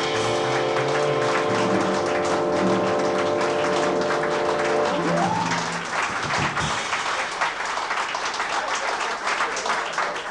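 A small jazz band ending a tune on a long held final chord, with accordion and brass sustaining it. About halfway through, the chord stops and the audience applauds.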